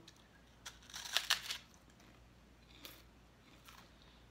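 Crunching bites into a crisp corn-puff snack, with its foil wrapper crinkling: a quick run of crunches about a second in, then a couple of fainter ones.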